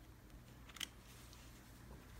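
Near silence with a faint low hum, and one brief soft click just under a second in as the two halves of a deck of Ellusionist Super Bees playing cards are pushed together in a faro shuffle.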